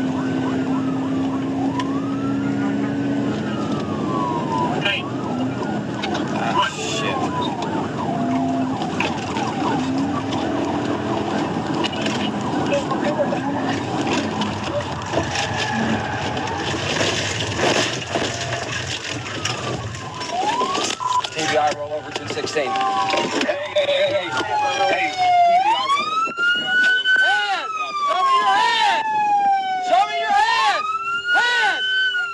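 Police cruiser siren wailing in repeated rising-and-falling sweeps over heavy road and wind noise at high speed. About halfway through, a burst of crash noise comes as the cruiser strikes the side of a Ford F-150 pickup in a PIT maneuver. Near the end the road noise drops away as the cruiser stops, and the siren sweeps come through clearer and louder.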